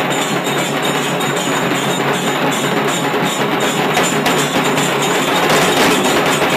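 A troupe of large cylindrical drums beaten with sticks, playing together in a fast, dense, continuous rhythm.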